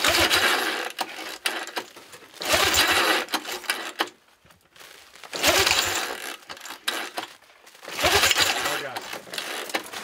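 Recoil pull-starter of a small vintage snowmobile engine being yanked four times, about every two and a half seconds, each pull spinning the engine over briefly without it catching: a cold start attempt on a sled that has sat unused since the previous season.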